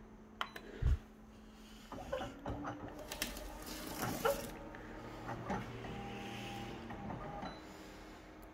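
Office photocopier scanning a fabric original: the scanner motor runs with a steady hum of several held tones from about two seconds in until near the end, over rustling of mesh fabric pressed onto the glass. A few clicks and a thump come in the first second.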